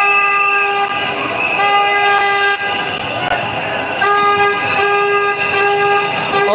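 A horn sounding a steady single-pitched note in long blasts, about a second each, one after another with short breaks, over loud street and crowd noise.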